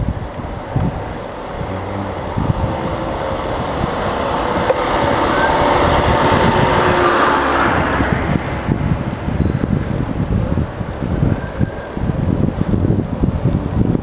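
A motor scooter passing close by: its engine grows louder over several seconds, is loudest about seven seconds in, then fades away. Wind rumbles on the microphone throughout.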